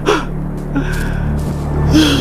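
A short, sharp gasp just after the start, over a steady low drone of background music.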